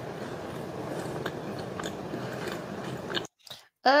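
Close-miked chewing of a mouthful of fast-food burger: steady wet mouth and chewing sounds with a few small clicks. It cuts out abruptly a little after three seconds in.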